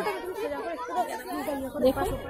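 Background chatter: several people's voices talking over one another, no words clearly picked out.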